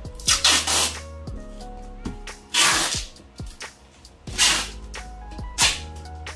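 Packing tape pulled off its roll in four short, loud tearing bursts as a cardboard box is sealed, over background music.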